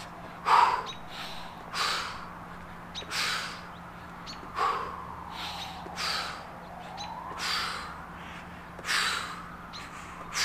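A man's hard breathing through a set of jump squats: a sharp, huffing exhale or gasp with each jump, about one every second and a half, with softer breaths in between.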